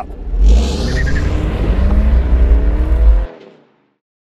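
Car engine accelerating, its pitch climbing steadily for nearly three seconds before it cuts off suddenly.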